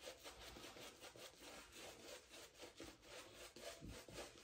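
A Declaration Grooming B3 shaving brush working lather over a face: a faint, quick, regular rubbing of bristles through lather.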